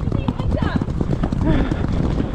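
Hoofbeats of a horse moving fast across turf, a dense irregular drumming thud under a low rumble on the helmet or saddle camera's microphone, with other horses close by.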